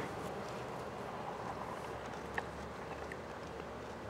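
Steady outdoor background noise, with a faint click of a fork against a plate about two and a half seconds in.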